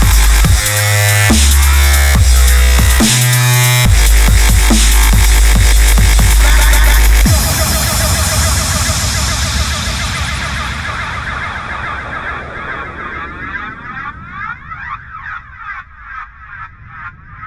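Dubstep track with heavy sub-bass and drums. About seven seconds in the bass cuts out and the music fades away, the highs closing off as it dies down.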